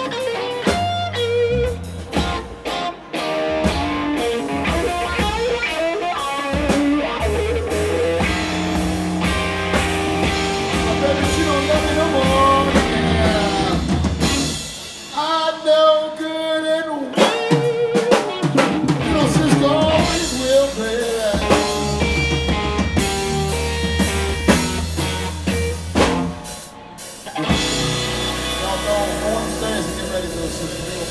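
Blues-rock trio playing live: electric guitar lines over bass guitar and drum kit, in a slow blues. Around the middle and again near the end the bass and drums drop out for a second or two, leaving the guitar alone.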